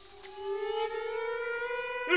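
Viola holding a single note and sliding slowly upward in pitch, over a soft hiss of whispered consonants from the voices that fades out partway through.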